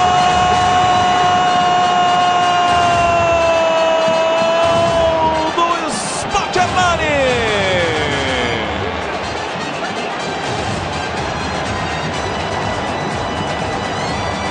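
Brazilian TV commentator's long drawn-out "gol" shout: one held note, slowly sinking in pitch, that breaks off about five and a half seconds in. A few sounds sliding down in pitch follow over the next few seconds, over steady stadium crowd noise.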